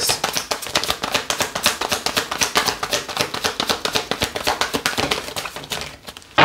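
Tarot deck being shuffled in the hands: a fast, continuous run of card-edge clicks and flicks, thinning out near the end.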